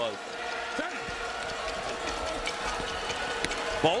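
Crowd noise inside an arena during a play: a steady din with a few sustained tones held through it and a single sharp click near the end.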